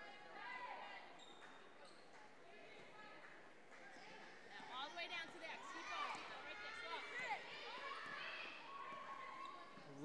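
Gym ambience during a high school basketball game: faint voices of players and spectators echoing in the hall, a little louder from about halfway, with a basketball being dribbled on the hardwood floor.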